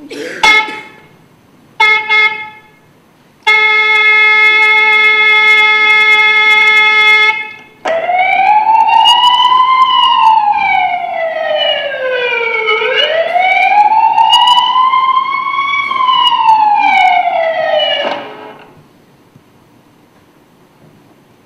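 Siren sound effect from a mime piece's soundtrack: a short blip and a brief tone, then a steady held tone for about four seconds, then a siren wailing up and down twice over about ten seconds before fading out.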